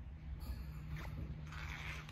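Quiet background: a faint, steady low hum with two faint clicks, about half a second and a second in.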